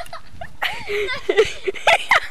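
High-pitched human laughter in short, quick bursts.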